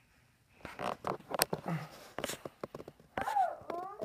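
Light knocks and rustling as a toddler clambers into a wooden dresser cabinet among stuffed toys, with one sharp click in the middle. About three seconds in, the toddler gives a short, high-pitched vocalization.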